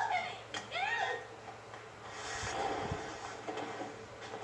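Short, high-pitched screams of fright from two people in a film, one at the start and another just under a second later, heard through a TV speaker in a room; a dull hiss follows from about halfway through.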